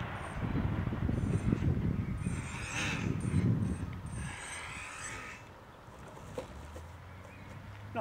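Wind rumbling on the microphone, strongest through the first half, with faint voices in the background. A single small click comes about six and a half seconds in.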